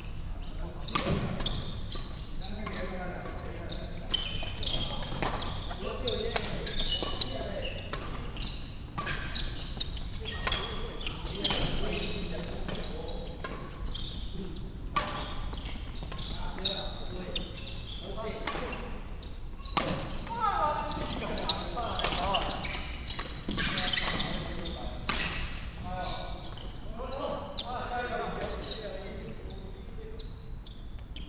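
Badminton rallies in an echoing sports hall: rackets strike the shuttlecock in repeated sharp cracks at irregular intervals, among players' footfalls on the wooden court floor.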